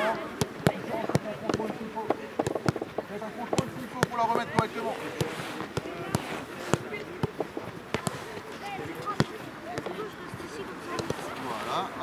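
Footballs being kicked back and forth on artificial turf during a passing drill: a continual, irregular series of sharp thuds from several balls at once.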